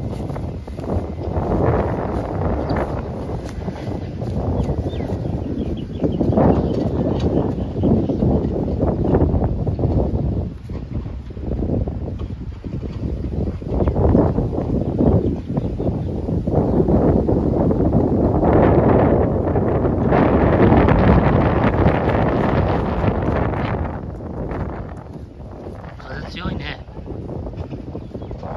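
Wind buffeting the phone's microphone: a loud, gusting rumble that swells and fades over and over.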